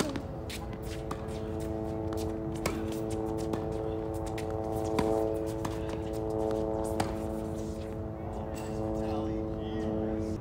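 Tennis rally: sharp pops of rackets striking the ball several times, the loudest about halfway through and again two seconds later, over a held chord of steady tones.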